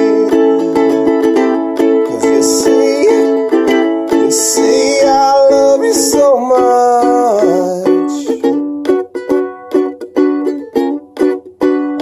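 Ukulele strummed in full chords, with a wordless voice bending in pitch over it in the middle. Near the end the playing turns to short, choppy strokes with gaps between them.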